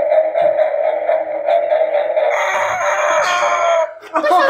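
Electronic toy lie-detector sounding its steady test tone while a hand rests on it. The tone grows fuller and brighter over the last second and a half, then cuts off suddenly.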